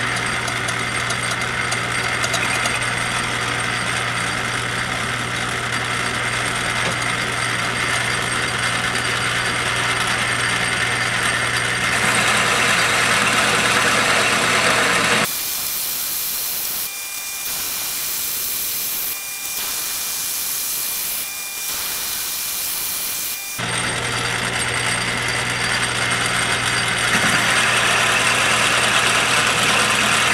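Metal lathe running under a roughing cut, its motor and drive humming steadily with the cutting noise of the tool on a part held in the three-jaw chuck. About halfway through, the hum drops out and a high hiss takes over for roughly eight seconds, then the lathe sound returns.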